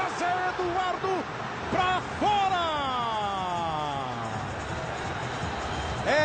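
A TV football commentator shouting excitedly in Portuguese, ending in one long drawn-out call that falls in pitch.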